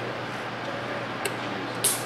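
Fisnar F4200N benchtop dispensing robot running its programmed dispensing pattern: a steady low hum as the table and needle head move, with two short sharp hissing clicks in the second half, about half a second apart.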